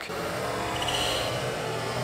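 Steady outdoor background noise: an even hiss with a faint low hum, with no distinct knocks or clicks.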